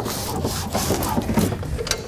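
Hand pressing and rubbing a plastic vapor-barrier sheet against a car door's sheet-metal panel, a steady rubbing noise as the sheet is sealed along its glued edge, ending with a short click.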